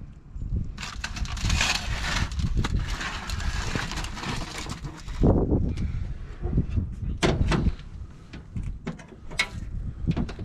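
A foil-covered pan scraping and crinkling as it is slid off the metal grate of a vertical charcoal smoker, followed from about halfway by a series of metallic clanks and knocks. A low rumble, like wind on the microphone, runs underneath.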